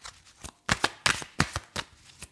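A tarot deck shuffled in the hands: a run of quick, irregular card snaps and clicks.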